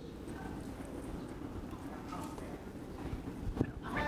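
Quiet hall room tone with faint, distant voices, and a single sharp knock near the end.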